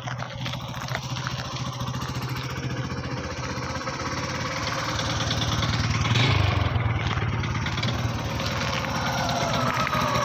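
Bajaj CT100's single-cylinder four-stroke engine idling close up, a steady rapid putter that gets a little louder about six seconds in.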